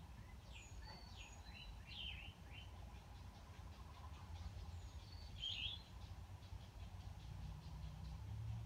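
A small bird chirping in quick, high, downward-sweeping notes, in two short bouts, over a faint low rumble.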